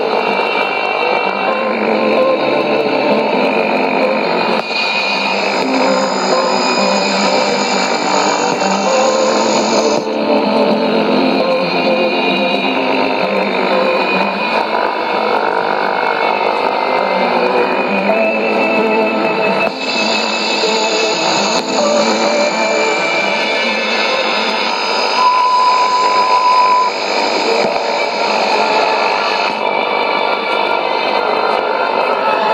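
Music received on shortwave AM at 13585 kHz and played through a Sony ICF-2001D receiver's speaker, with radio noise and distortion under it. A steady beep-like tone sounds for about a second and a half near the end.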